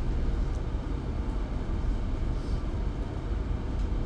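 Steady low background rumble of the lecture room, with a few faint ticks and no speech.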